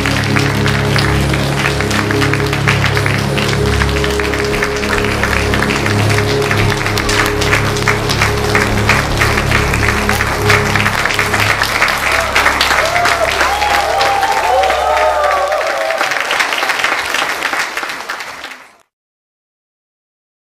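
Audience applauding, with a few cheers about twelve seconds in, over the closing of the backing music. The music stops about sixteen seconds in, and the applause fades out a couple of seconds later.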